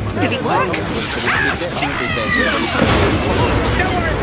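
Several cartoon soundtracks playing over one another: overlapping character voices with swooping cries that rise and fall in pitch.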